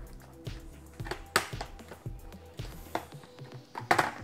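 Plastic clips of a laptop's bottom cover clicking and snapping as the panel is pried and lifted off the chassis: several sharp clicks, the loudest about a second and a half in. Quiet background music plays underneath.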